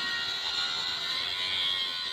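Handheld angle grinder grinding the weld build-up on a railway switch tongue rail, a steady high-pitched whine from the disc on the steel. This is the finishing grind that takes the deposited weld metal down smooth and flush.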